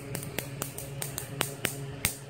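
Ruhmkorff induction coil firing off a home-made high-voltage supply: sharp snapping clicks at uneven intervals, a few a second, loudest about one and a half seconds in, over a steady low electrical hum.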